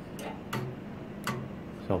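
K&S 4522 wire ball bonder clicking three times as it runs a bond-off cycle, breaking off the wire and sparking a new ball at the capillary tip.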